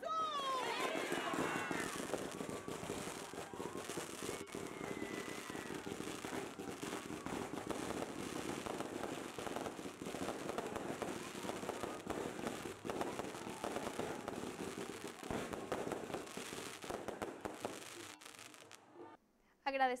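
Fireworks crackling and popping in a dense, continuous stream over a crowd's voices, with shouting voices at the start; the crackle thins and fades out near the end.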